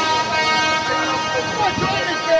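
A horn sounding one long, steady note, with crowd voices underneath.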